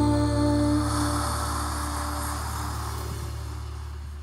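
A rock power ballad ending on a long held chord over a steady deep bass note, slowly fading out.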